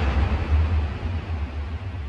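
End of a dancehall track: the vocals and beat drop out, leaving a deep sustained bass note that fades away.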